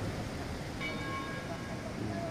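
A church bell tolling, one stroke about a second in, its ring lasting about a second, over the steady low rush of the flooded river and faint voices.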